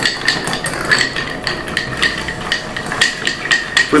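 Bar spoon stirring ice in a glass mixing glass: a quick, uneven run of light clinks with a bright ring. The cocktail is being stirred to chill it.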